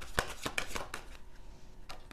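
A tarot deck being shuffled by hand: an irregular run of light, sharp card clicks and snaps.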